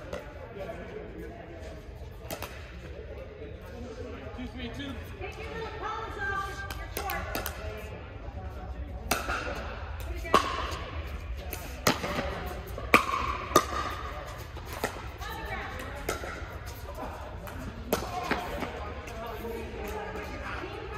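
Pickleball paddles hitting a hard plastic ball during a rally: a string of sharp pops, the loudest and most frequent from about ten to fourteen seconds in, in a large indoor court hall over a background of distant voices.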